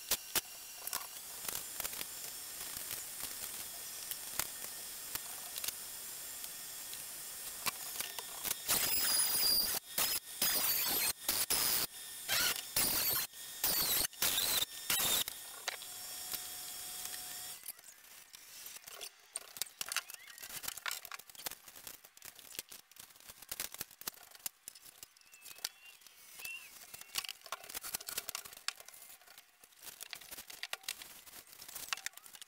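Cordless drill driving drywall screws into gypsum board: a run of short bursts of high motor whine in the middle, over a steady hiss. After that come quieter scattered clicks and knocks of drywall sheets being handled.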